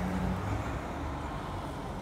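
A van and then a car driving past on the street, a steady low engine and tyre noise.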